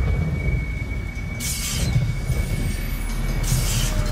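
Opening of a dance routine's backing track: a loud, deep rumble with three hissing whoosh sweeps about two seconds apart over a faint steady high tone.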